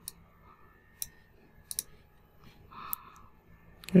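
A few quiet, sharp computer mouse clicks, one of them a quick double click, spaced out over a few seconds.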